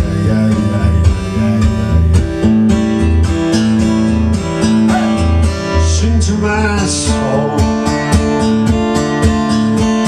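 Acoustic guitar strummed in a steady rhythm over a repeating low bass note pattern, played solo without singing.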